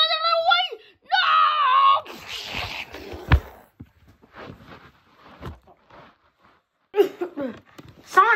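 A child's voice crying out 'no, no' and then holding a high scream for about a second, followed by handling rustle with a single thump as the phone is jostled, and scattered faint rustling after it.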